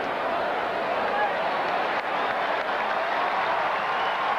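Stadium crowd noise: a large football crowd cheering and clapping in a steady, even wash of sound.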